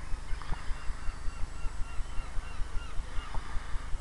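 A bird calling a quick run of about ten short rising-and-falling notes, about four a second, lasting a little over two seconds. Under it is a steady low rumble that pulses regularly, about four times a second.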